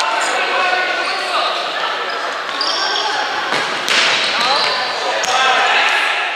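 Futsal game sounds in a reverberant sports hall: players and spectators calling out, with two sharp knocks of the ball being struck, about four and five seconds in.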